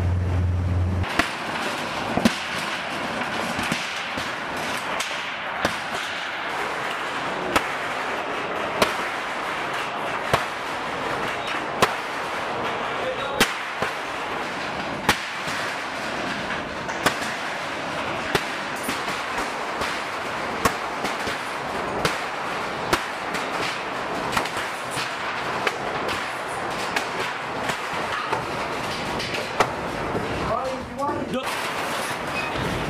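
Demolition of corrugated iron sheds: sharp metal-and-timber knocks about every second and a half over a steady clattering din, as sheets and wooden framing are struck and pulled down. A motorboat engine hum cuts off about a second in.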